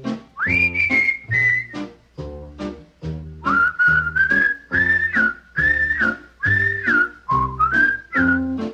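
Instrumental break of a 1950s swing-pop record: a whistled melody, one clear high line that slides up into its notes, over a steady bouncing beat of bass notes and short chords.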